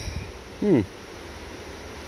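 A man's short, falling "hmm" about half a second in, over steady low outdoor background noise.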